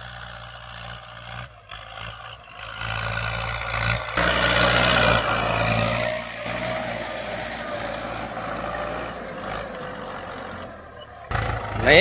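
Ford farm tractor engine running steadily under load as it pulls a disc implement through tilled soil; it grows louder about four seconds in, then settles back to a steady drone.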